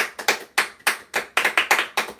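A few people clapping their hands: a quick, uneven run of claps, about four or five a second, several clappers out of step with one another.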